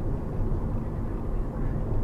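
Car cabin noise while driving: a steady low rumble of road and engine with a faint steady hum.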